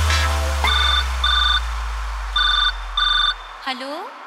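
Telephone ring sound effect in a DJ remix: two pairs of short electronic double rings over a deep bass boom that slowly fades away as the beat drops out. A voice sample begins near the end.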